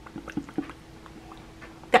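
Lips coated with fresh lip gloss pressed together and parted in a few soft, wet smacks in the first second or so, a test of whether the gloss is sticky.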